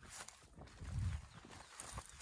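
Footsteps through dense low leafy plants, with leaves rustling against the walker. There is a stronger low rumble about halfway through.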